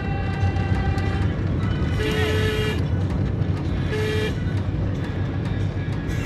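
Car horn tooting twice, a longer blast about two seconds in and a shorter one about four seconds in, over the steady engine and road rumble heard from inside a moving car.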